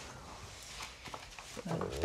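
Quiet room tone in a pause between speech, with a few faint soft clicks about a second in.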